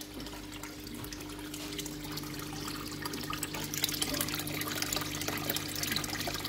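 Water splashing and trickling as it falls from a filter outlet into a fish tank, growing slowly louder, over a steady low hum.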